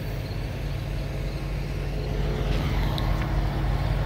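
Diesel semi truck idling: a steady low drone.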